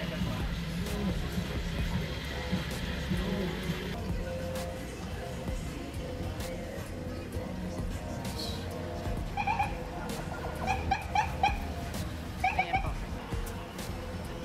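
Background music over a low, steady rumble, with a string of short, pitched chirps in the last few seconds.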